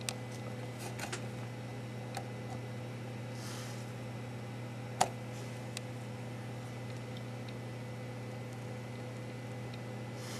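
Steady electrical hum of bench equipment, with a few small clicks from a meter probe and handling on an open CB radio's circuit board, the sharpest about halfway through.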